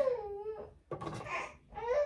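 A baby fussing: high-pitched whiny cries, each drawn out for under a second with the pitch sagging and then rising, twice with a short break between, and a third starting near the end.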